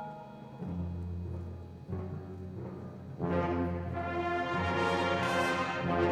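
High school marching band playing, brass and percussion: a soft passage of low held notes, then the full brass comes in loud about three seconds in.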